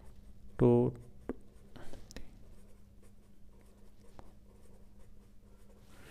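Marker pen writing on paper: faint scratches and a few light taps as a row of digits and multiplication signs is written out.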